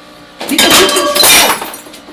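Glass smashing: a loud crash about half a second in, with shards clinking and ringing for about a second before it dies away.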